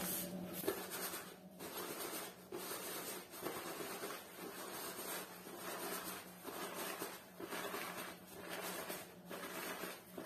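A silicone brush with soft bristles stroked repeatedly along the quilted sleeve of a down jacket, a scratchy brushing about once a second, to break up down that has clumped after washing.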